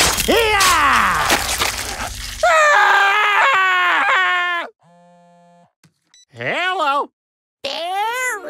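Cartoon sound effects: water spraying from a stabbed loudspeaker with a sound that slides steeply down in pitch, then a man's long groaning cry a couple of seconds in, followed by shorter vocal sounds.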